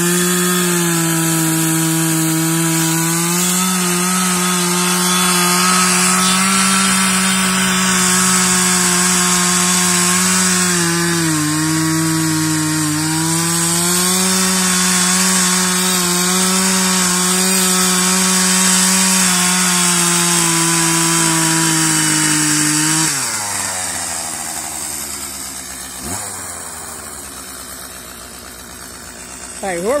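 Two-stroke gas chainsaw held at high revs while cutting into a resin-rich pine fatwood stump. Its pitch dips briefly under load about a second in and again around 11 to 13 seconds in. Near the end the throttle is released and the engine winds down to a quieter idle.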